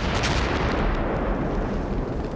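Artillery fire and shell blasts, likely dubbed over the archive footage: a dense, continuous wash of blast noise with a few sharp reports early on, easing slightly towards the end.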